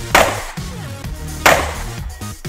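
Two sharp pistol shots from a Glock 26, about 1.3 seconds apart, over background electronic dance music.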